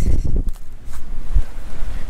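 Strong wind buffeting the camera microphone in low, gusty rumbles that ease off briefly between about half a second and a second in, then pick up again.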